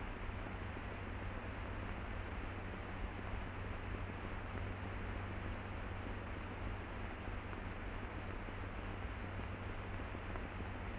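Steady hiss with a low hum: the background noise of an old film soundtrack, with nothing else heard.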